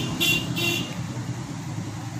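Two short, high-pitched horn toots in quick succession within the first second, over a steady low hum.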